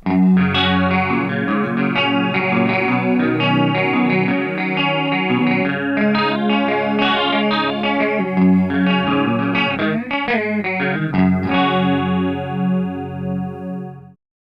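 Clean electric guitar, a Les Paul-style humbucker guitar tuned a half step down, played through an Engl Retro Tube 100 amp plugin on its clean channel. An Eventide H910 harmonizer set to a slight detune gives it a chorus-like doubling as it picks a passage of ringing notes. A final chord rings out and fades near the end.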